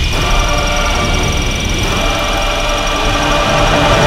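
Quadcopter drone hovering, its propellers giving a steady whine made of several held tones, with a low rumble underneath.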